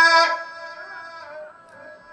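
A man's voice in melodic Quran recitation (tajweed), holding a long, high note that stops about a third of a second in. A fading reverberant tail of the voice follows.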